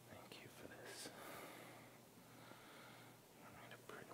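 Near silence: faint rustling and a few soft clicks as a cloth is handled and the altar is prepared.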